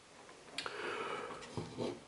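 Faint handling noise as a graphics card is picked up from a table and turned on its side: a light click about half a second in, then a soft rustle of hands on the card.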